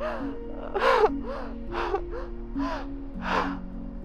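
A person sobbing: gasping, shaky breaths broken by short crying cries, about two a second, over soft sustained music.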